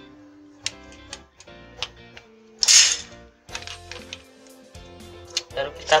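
Background guitar music with steady notes, over scattered sharp clicks and knocks from hands handling a soldering iron and a plastic socket housing, and one loud short hissing burst about two and a half seconds in.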